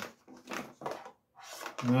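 Handling noise as a brushless speed controller and its thick power wires are lifted out of a cardboard box: a few short scuffs and knocks, then a soft rustle.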